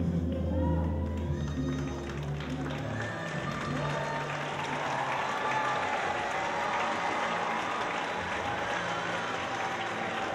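Cha cha music with a strong bass beat ends about three seconds in, and audience applause carries on.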